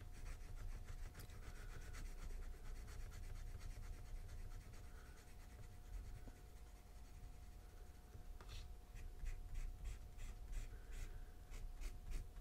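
PenBBS 355 fountain pen with a broad Nemosine nib scratching faintly on notebook paper as it fills in an ink swatch, then a quick run of short hatching strokes, about three a second, in the last few seconds.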